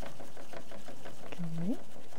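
Bamboo tea whisk (chasen) beating matcha in a ceramic tea bowl: a fast, even scratching swish as the whisk froths the tea into fine bubbles. A short rising hum from a person near the end.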